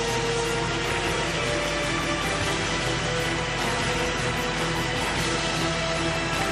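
Music for a pairs figure skating program, playing steadily with long held notes.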